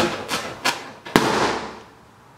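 Kitchen knife jabbing at a rubber balloon with a few sharp taps, then the balloon bursts with a loud pop just over a second in, its noise trailing off quickly.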